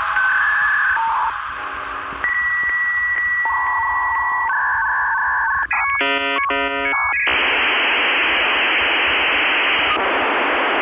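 Dial-up modem handshake: steady tones at changing pitches, then a high answer tone with regular clicks about twice a second, then warbling tones and a short burst of layered tones. From about seven seconds in it settles into a steady hiss.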